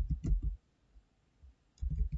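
Typing on a computer keyboard: a quick run of keystrokes at the start, a pause of over a second, then more keystrokes near the end.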